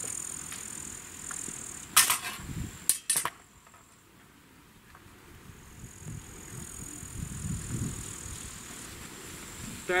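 Steel sword and buckler striking in a short exchange: one sharp clash about two seconds in, then two or three more in quick succession about a second later.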